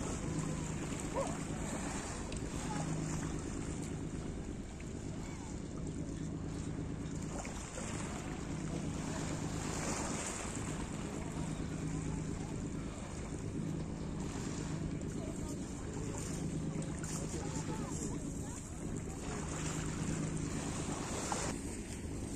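Wind on the microphone and small waves washing onto a pebble shore, over a steady low hum.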